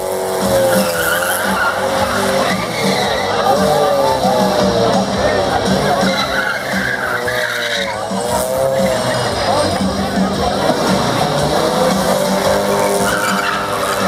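Mazda MX-5 Miata doing a burnout: the engine revving hard, its pitch rising and falling again and again with the throttle, over continuous tyre squeal as the car spins doughnuts.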